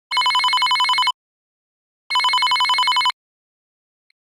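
Telephone ringing twice, each ring about a second long with a fast warble, two seconds apart.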